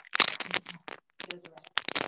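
A fast, irregular run of scratches and knocks from a device being handled close to its microphone, heard through a video call.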